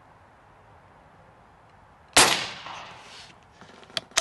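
Umarex Gauntlet .30 precharged pneumatic air rifle firing a single shot about two seconds in: one sharp crack that dies away over about a second as the pellet shatters a stick of chalk. A few faint clicks follow near the end as the bolt is worked.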